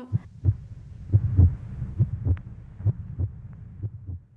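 Heartbeat sound effect: low double thumps, about one pair a second.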